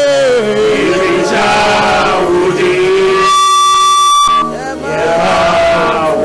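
A man's voice chanting in prayer through a handheld microphone and PA system, its pitch sliding and breaking. About halfway through, a perfectly steady held tone sounds for about a second.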